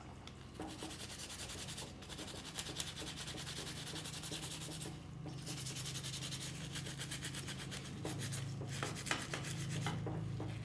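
Rapid scrubbing of a small diecast metal model-car body with a brush and scouring pad in a pot of liquid, stripping its paint: dense back-and-forth rubbing strokes with short pauses about two and five seconds in.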